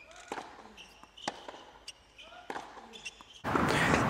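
Four sharp knocks of tennis balls being hit or bouncing, spaced about half a second to a second apart. About three and a half seconds in, a steady hiss of court ambience comes in.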